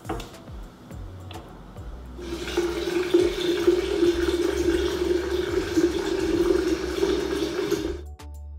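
Water running hard from a kitchen tap, starting about two seconds in and cutting off suddenly as the tap is turned off at the end. Soft background music runs underneath.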